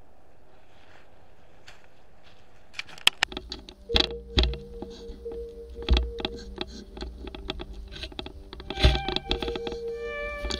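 A few seconds of steady low background hiss, then background music with a drum beat and held synth tones starts about three seconds in and runs on.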